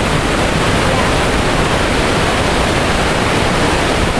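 Waterfall in heavy flow: a loud, steady rush of falling water.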